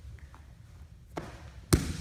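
A soft knock about a second in, then a single sharp slap just before the end: bodies and hands striking a foam grappling mat.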